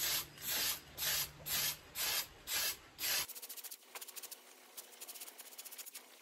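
Aerosol can of spray-on air filter oil sprayed in short hissing bursts, about two a second, onto a foam air filter, the bursts stopping a little past halfway. After that only a faint, fine crackle.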